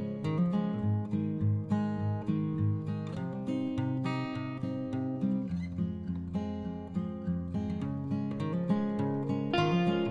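Background music led by an acoustic guitar, steady picked and strummed notes.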